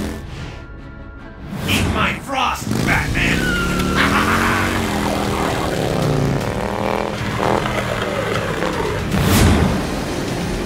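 Background action music with vehicle engine sound effects for a chase: a motorcycle pursuing a speeding truck.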